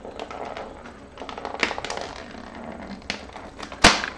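Fingers picking at and prying open a small perforated cardboard door on a chocolate advent calendar: light scratching and tearing clicks, with a few sharp snaps, the loudest near the end.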